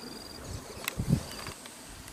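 Insects trilling in short, evenly pulsed bursts, with a low thump about a second in.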